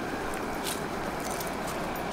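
Steady outdoor background noise with a few faint clicks.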